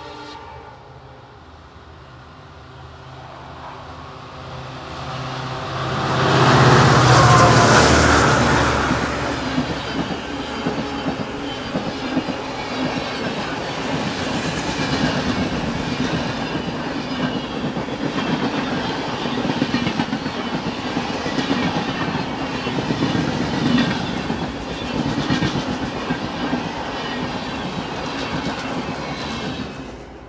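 EMD WDP-4 diesel locomotive, with a two-stroke V16 engine, approaching and passing at speed, loudest about seven seconds in. Its coaches then roll by with a steady rhythmic clickety-clack of wheels over rail joints. A horn note dies away in the first second.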